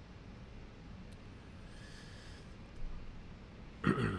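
A man breathing close to the microphone over quiet room tone: a soft exhale around the middle, a small click, then a short, sharp breath through the nose near the end, the loudest sound here.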